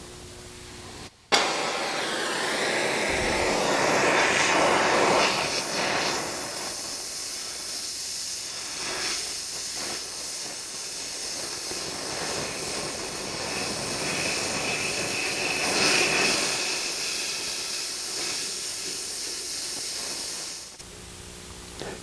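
Oxy-acetylene torch flame fuse-welding a steel plate into the square knockout of a steel disc blade: a steady hiss that starts suddenly about a second in, swells and eases slightly, and stops near the end.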